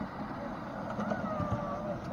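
Miniature railway train with passengers on its ride-on carriages passing close by: a low rumble of wheels on the rails with a few knocks over the track, under faint voices.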